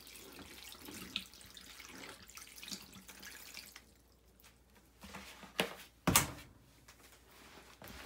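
Distilled vinegar pouring from a plastic gallon jug onto clothes in a plastic tub for the first three to four seconds. After a quieter stretch, some handling noises and a single loud thump come about six seconds in.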